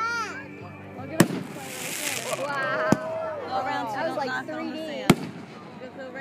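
Aerial fireworks going off: three sharp bangs about two seconds apart, with a hiss after the first.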